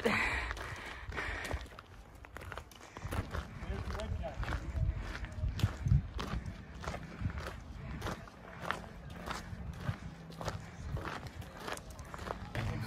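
Footsteps crunching on a gravel road at a steady walking pace, with trekking-pole tips tapping on the stones, about two steps a second.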